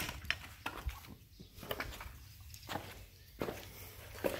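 A sharp click at the very start, then faint scattered footsteps and small knocks on a concrete floor.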